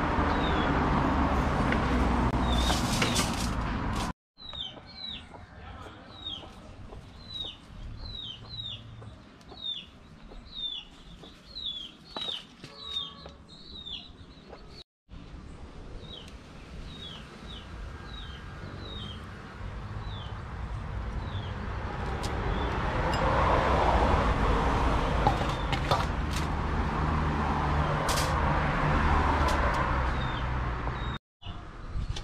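Bird chirping: many short, high chirps that fall in pitch, repeated irregularly for much of the middle, over steady background noise. A louder rushing noise fills the first few seconds and swells again towards the end.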